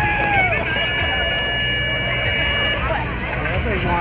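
Rodeo arena buzzer sounding one steady electronic tone for about two seconds, over crowd chatter and voices. It is the signal that ends a bronc ride.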